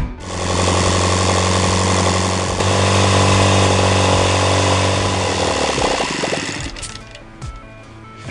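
OS FT-120 Gemini four-stroke flat-twin model glow engine running steadily on a test bench, its propeller spinning. It fades out about six seconds in.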